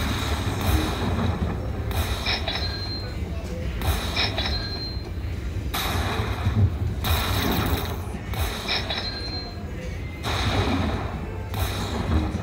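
Dollar Storm slot machine bonus sound effects: loud crashes every two seconds or so, some followed by short high chimes, as the win meter counts up, over a low hum.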